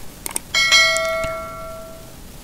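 Subscribe-button animation sound effect: two quick clicks, then a bright bell ding about half a second in that rings on and fades away over about a second.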